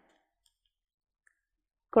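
Near silence, a dead pause between sentences, before a woman starts speaking at the very end.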